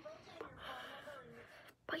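A girl's soft, breathy, half-whispered voice with audible breath, quieter than her normal talking, before she says "but" at the very end.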